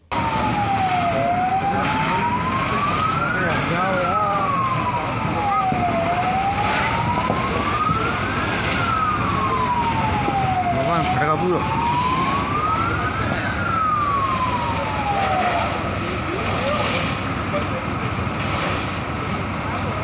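Emergency vehicle siren wailing slowly up and down, three long rise-and-fall sweeps about five seconds each, cutting off about three-quarters of the way through. Underneath are the voices and general noise of a crowd.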